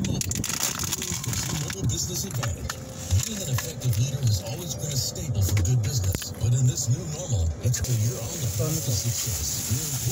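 Low rumble of a car heard from inside its cabin, with faint, indistinct low voices.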